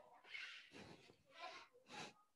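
Faint, short breathy exhalations, four in quick succession, from a person rocking on her belly in yoga bow pose.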